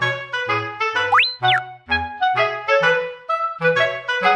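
Background music: a lively woodwind-like melody over a bouncing bass line, with one quick sliding whistle effect that glides up and back down about a second in.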